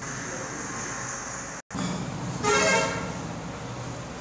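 A vehicle horn honks once, briefly, about two and a half seconds in, over steady background hiss. Shortly before it the sound drops out for an instant at an edit cut.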